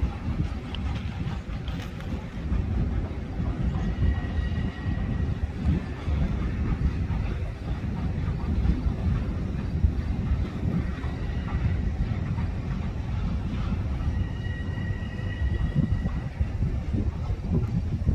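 Long Island Rail Road M7 electric multiple-unit train approaching, a low steady rumble of wheels on track. A high squeal comes and goes several times.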